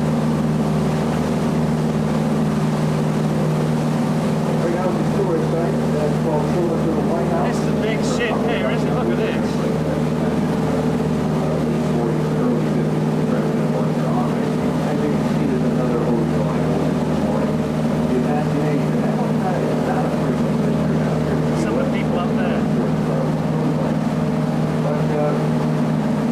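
A boat engine running steadily, a constant low hum with a few unchanging tones.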